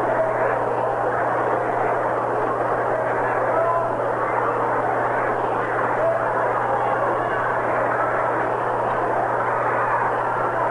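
Steady murmur of a large ballpark crowd between pitches, heard through an old narrow-band radio broadcast, with a constant low hum underneath.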